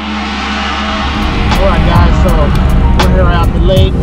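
Steady low road rumble inside a moving car's cabin, building from about a second in, with intro music fading under it and a few brief voice sounds and sharp clicks.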